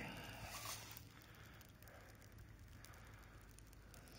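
A rake scraping and rustling briefly through dry leaves in the first second, then near silence.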